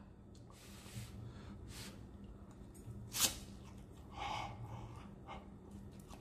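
Faint breathing and mouth noises while eating a forkful of very hot ramen noodles, with one short sharp sound about three seconds in.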